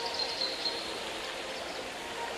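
Ambience of steady, even flowing-water noise, with a small bird's rapid high chirps in the first half second.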